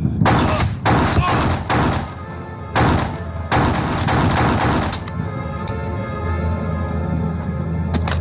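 A handgun fired again and again, more than half a dozen shots over the first five seconds, some in quick runs, over dramatic background music that carries on as held tones once the shooting stops.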